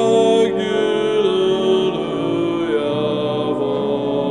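A man singing a slow hymn, holding long notes and moving to a new pitch about a second in and again near three seconds.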